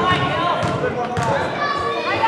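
Indistinct voices echoing around a gymnasium, with a basketball bouncing on the hardwood court a couple of times.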